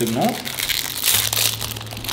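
Thin clear plastic packaging crinkling and rustling as a packet of photo paper sheets is opened and handled.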